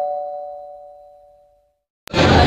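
A two-note ding-dong chime, a higher note then a lower one, ringing on and fading away over about a second and a half.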